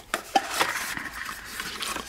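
A paper card and cardboard packaging being handled, rustling and sliding against each other, with a couple of light clicks near the start.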